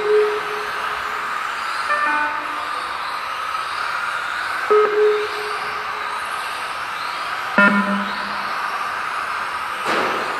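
Electric Tamiya TT-02 RC touring cars lapping a hall floor, their motors and gears giving a steady whine. A lap-timing system sounds a short electronic beep or chime four times as cars cross the line: at the start, and about two, five and seven and a half seconds in.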